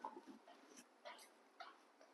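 Near silence with a few faint, short sounds from young macaques eating tomatoes and carrots.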